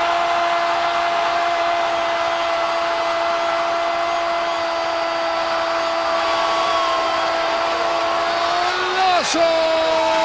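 A football TV commentator's long goal call: one 'gol' held on a single steady pitch for about nine seconds. It breaks off near the end into normal speech, over steady stadium crowd noise.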